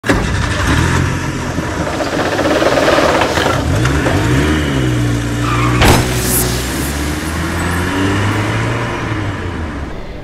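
Intro sound effect of an engine running, its pitch gliding up and down as if revved in the middle, under a dense noisy layer, with one sharp hit about six seconds in.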